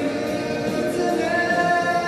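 A young male soloist singing through a handheld microphone, holding long notes; a new, higher note starts just over a second in.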